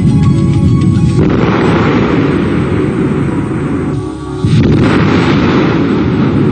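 Loud, rushing roar of a burning liquefied-gas tank bursting into a fireball. Music with steady tones lies underneath for about the first second and is then drowned out. The roar dips briefly about four seconds in, then surges back just as loud.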